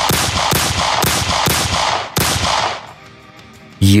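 A rapid string of gunshots, roughly two a second, each with a reverberating tail: a full magazine being emptied. The shots stop a little over two seconds in, leaving soft background music.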